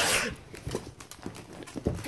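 Handling noise: irregular light taps and knocks as plush toys and the camera are moved about and bumped against a hard surface.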